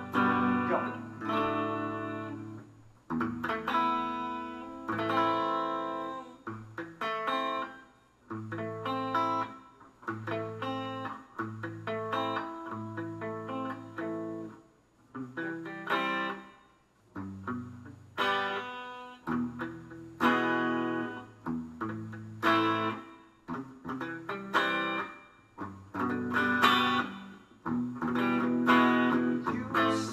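Acoustic guitar strummed in a rhythmic chord pattern: an improvised groove played in phrases with short breaks between them.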